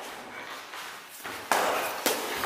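Boxing-glove sparring: quiet footwork, then a sudden hit about one and a half seconds in, as a gloved punch lands on a raised guard.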